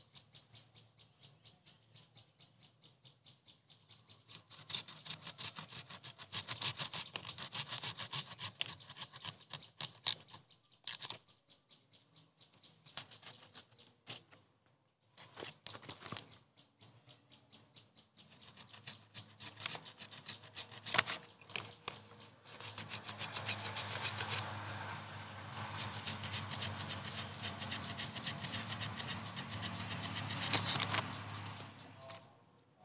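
Hand pruning saw cutting through the woody roots of a bonsai with quick back-and-forth strokes. The sawing starts about four seconds in, comes in several spells with short pauses, and runs steadily through the last third.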